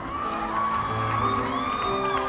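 Live solo grand piano playing held notes, with a woman's voice holding two long wordless notes that rise and fall over it.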